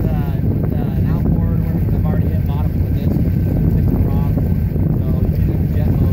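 Motorboat engine running steadily under way, with a low drone and wind buffeting the microphone.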